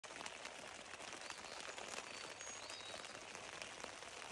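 Rain falling on a tent canopy, heard from inside the tent: a faint, steady hiss with scattered small ticks of drops hitting the fabric.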